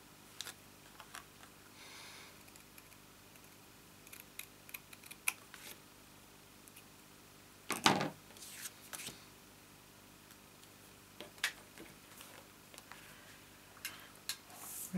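Quiet handling of paper and card: scattered small clicks and faint snips as scissors cut off the overhanging end of a strip of designer paper, with one louder knock about eight seconds in.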